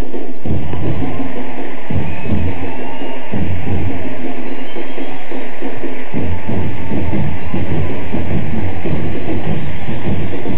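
Batucada, a samba percussion band of many drums, playing a dense steady rhythm, with the deep bass drums dropping out and coming back in during the first six seconds.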